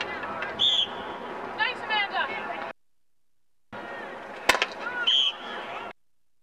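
Players' and spectators' voices at a field hockey game, with a sharp crack of a stick striking the ball about four and a half seconds in and two short, high umpire's whistle blasts. The sound drops out to dead silence for about a second in the middle and again at the end, where the footage is cut.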